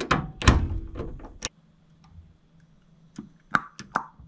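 Socket wrench tightening a nut on an inverter's DC battery terminal: a few separate sharp metal clicks and knocks, then a quicker cluster of clicks near the end.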